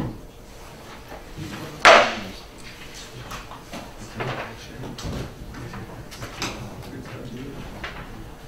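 Room noise in a quiet classroom: one sharp knock or clack about two seconds in, then a few fainter knocks and rustles.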